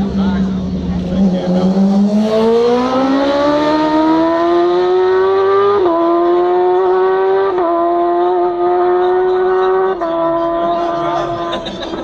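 A superbike racing motorcycle's engine, loud and coming down the straight at speed. Its note climbs steadily for several seconds, then steps down in pitch three times: about six, seven and a half, and ten seconds in.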